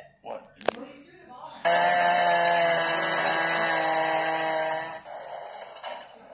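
A cartoon door-shredding machine running loudly for about three seconds: a steady mechanical whine over a hiss, starting abruptly and fading out. A sharp click comes just before it.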